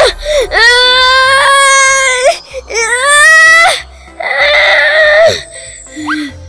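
A cartoon character's high-pitched wailing cries: three long, drawn-out wails that bend in pitch, then a rougher, noisier cry near the end, as the character is flung into the air.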